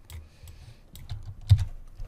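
A few sharp clicks from a computer mouse and keyboard, with one dull thump about one and a half seconds in.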